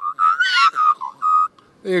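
A man imitating an Australian magpie's carolling call with his voice: a run of high, warbling notes with a rising glide about half a second in and a short held note after a second, the steps he has just taught put together into one call.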